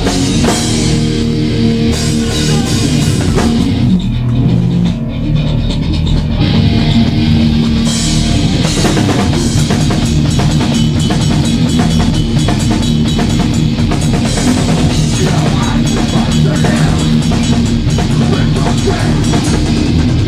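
Hardcore punk band playing live and loud: distorted electric guitars, bass and drum kit. About four seconds in the cymbals drop away for a short break, and the full band comes back in a few seconds later.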